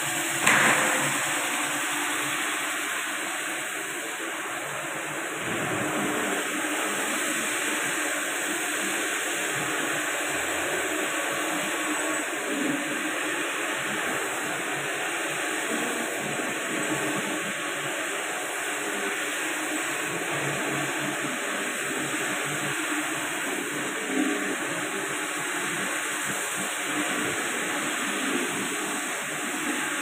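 Electric marble floor grinding machine running steadily as its abrasive head grinds a wet marble floor. A short, loud knock comes about half a second in.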